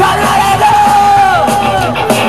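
Live rock band of electric guitars, bass guitar and drum kit playing loudly, with a voice yelling a long held note over it that falls away about a second and a half in.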